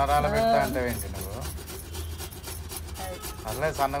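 Fresh coconut being grated on a flat stainless steel grater: quick repeated scraping rasps, stroke after stroke.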